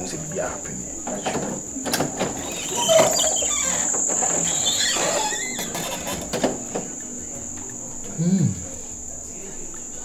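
A steady high-pitched insect trill, typical of crickets, runs throughout. Over it, a louder stretch of shuffling noise with a few sharp knocks comes in the middle.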